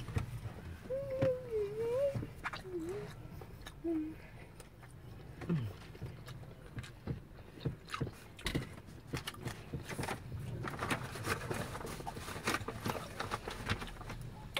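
Eating sounds from fried chicken: a few short hummed 'mm' murmurs in the first seconds, then a run of small clicks and rustles of chewing and handling food and a paper takeaway bag.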